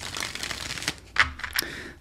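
A tarot deck being shuffled by hand: cards sliding against one another, with a few sharp clicks as they snap together in the second half.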